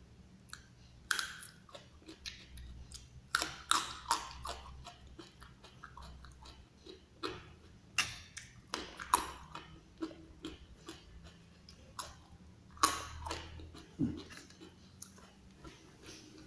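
Chewing raw leunca (black nightshade) berries, with irregular sharp crunches and clicks.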